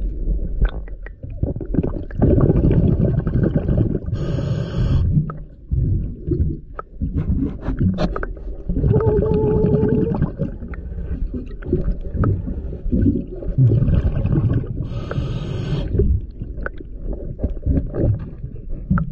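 A diver breathing underwater through a regulator: three long bubbling exhalations, two of them followed by a short hiss of inhaled air.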